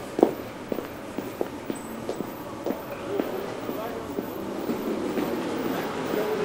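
Footsteps on brick paving at a walking pace, about two steps a second, the loudest just after the start. From about halfway, a murmur of people's voices rises in the background.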